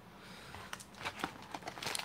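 Glossy wrappers of trading-card packs crinkling and rustling as a stack of packs is lifted out of a cardboard box, a scatter of faint crackles that grows busier after the first half second.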